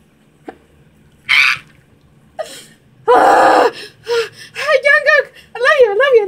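A woman's excited wordless vocal reactions: a short breathy gasp about a second in, a loud squeal around three seconds, then a high wail whose pitch wobbles up and down several times a second near the end.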